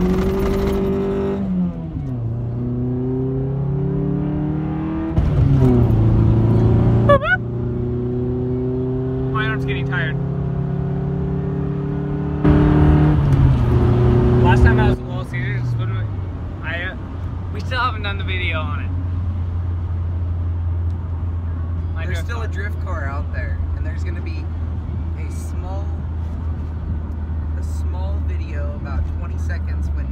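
A car engine heard from inside the cabin, revved and accelerating in loud spurts three times, its pitch rising and falling. It then settles into a steady low hum for the second half.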